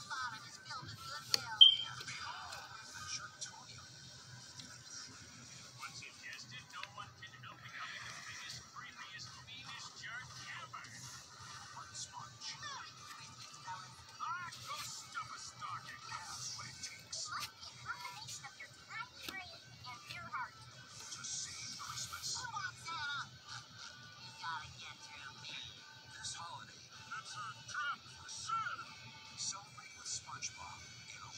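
Television audio of an animated trailer: music with cartoon character voices, heard thin through the TV's speakers, with one brief sharp sound about two seconds in.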